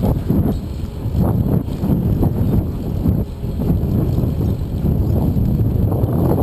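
Wind buffeting the microphone of a camera on a moving bicycle, a loud, uneven low rumble that rises and falls in gusts, with the ride's own road noise underneath.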